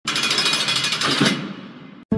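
A loud, rapid rattling, hammer-like noise that stops sharply about a second and a quarter in, then trails off.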